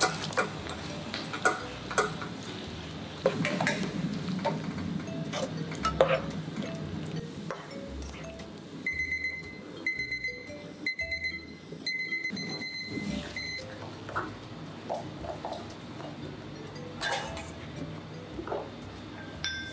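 Cut squid slides from a colander into boiling water in a wok and is stirred with a skimmer, with light clinks against the pan. About nine seconds in, a digital kitchen timer beeps in quick repeated bursts for about four seconds.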